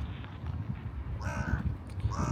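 A crow cawing once, about a second in, over a low rumble of wind on the microphone.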